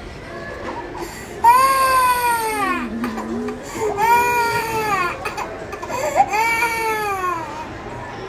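Toddler crying hard in three long wails, each falling in pitch, the first starting suddenly about a second and a half in, while her ear is being pierced.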